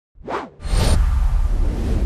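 Two whoosh sound effects of a slide-in video transition: a short swish, then a longer, louder one about half a second in that trails off into a low rumble.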